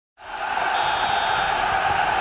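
Logo intro sound effect: a steady crowd-like noise swells in just after the start and holds level, with a faint thin high tone briefly about a second in.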